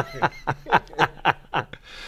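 Two men laughing together in short repeated bursts, about three or four a second, that fade and trail off into a breathy exhale near the end.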